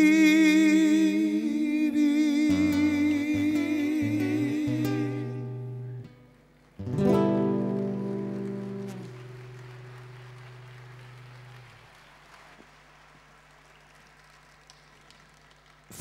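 Two male voices hold the final sung note of a chamamé song with vibrato over acoustic guitars, ending about five seconds in. A single strummed acoustic guitar chord follows about two seconds later and rings out, fading away over several seconds.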